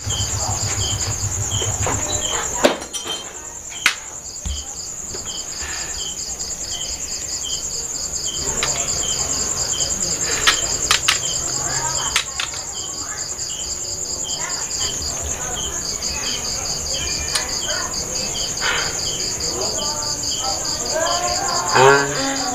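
Insects chirping: a steady high-pitched trill with rapid, evenly pulsed chirping beneath it. A few sharp knocks come through, two in the first four seconds and a cluster after about ten seconds.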